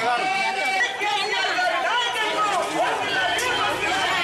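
Speech throughout: several voices talking at once, overlapping.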